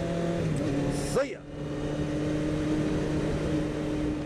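1988 Honda CBR600F1 Hurricane's inline-four engine running at a steady speed while riding. A short rise and fall in pitch and a brief dip in level come just over a second in.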